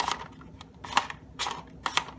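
Hard PLA plastic parts of a 3D-printed puzzle box clicking and clacking as they are moved by hand, checking that the mechanism still works after gluing. The clicks come in four quick runs.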